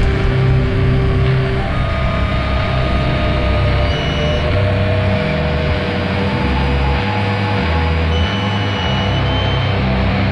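Doom metal instrumental passage: a slow riff of low notes that change every half second or so, under a dense wall of sound, with a few long held high notes above it. No vocals.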